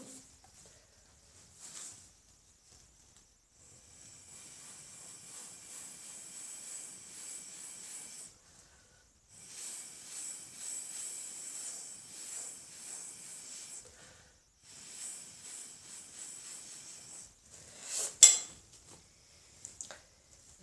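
Breath blown through a drinking straw onto wet acrylic pour paint: three long, breathy hisses of several seconds each, with short pauses between them. A single sharp knock near the end.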